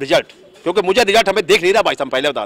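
A man speaking in Hindi to reporters, with a short break in his speech about a quarter of a second in.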